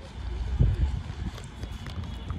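Wind buffeting the microphone in uneven low rumbling gusts, strongest about half a second to a second in.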